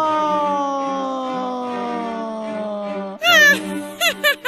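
A cartoon man's long falling yell, sliding slowly down in pitch as he drops from the tower, over soft background music. Near the end it breaks off and a brief, shrill, wavering cackle from the witch begins.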